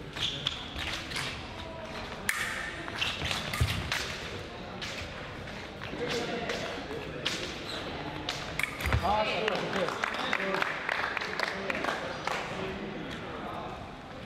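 Fencing footwork on a metal piste: a run of sharp clicks and knocks, with two heavier thumps a few seconds in and again past the middle. Indistinct voices echo in a large hall.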